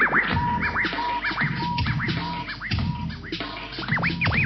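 Turntable scratching over an old-school hip hop beat: quick back-and-forth scratches that sweep up and down in pitch, over a drum beat and bass line, with a short tone repeated in brief pulses.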